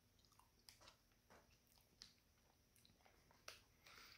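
Near silence, with a few faint, soft mouth clicks of someone chewing Swedish Fish gummy candy with closed lips, the last one near the end a little louder.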